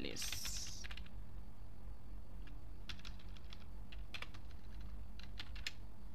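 Computer keyboard typing: a quick run of keystrokes at the start, a pause, then scattered keystrokes in the second half, over a low steady background hum.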